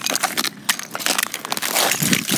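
Footsteps crunching through crusted, icy snow: a quick run of irregular crunches and cracks underfoot.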